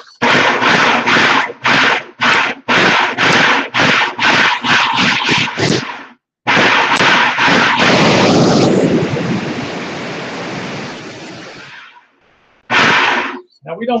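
Black and Decker food processor chopping fresh tomatoes: first a fast series of short pulses, about two a second, then a longer run of several seconds that drops to a lower, steadier sound and winds down, then one more short pulse near the end. It is pulsed so the sauce keeps some of its roughness.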